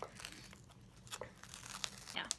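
Excess glitter iron-on vinyl being peeled up off its clear carrier sheet on a Cricut cutting mat: faint crinkling with a few sharp crackles.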